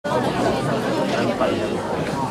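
Babble of many people talking at once in a large hall, steady throughout, before the room settles down.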